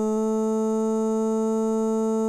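A single vocal note in Melodyne 5 sounding as one steady, unwavering tone while its note blob is clicked and held: the sung vowel is frozen into a sustained, synthetic-sounding drone so its pitch can be judged.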